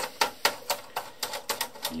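Phillips screwdriver working a metal screw out of the plastic insert on a ControlLogix chassis power supply: a run of sharp, irregular clicks, about four a second.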